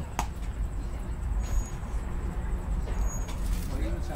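Outdoor ballfield ambience between pitches: a steady low rumble with faint distant voices. There is a sharp click just after the start, and a faint short high chirp repeats about every second and a half.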